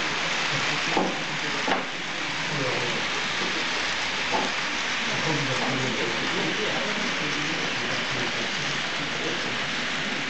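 Model freight train running along the layout track: a steady hiss that stays even as the wagons pass, with two light clicks about a second in and faint voices in the background.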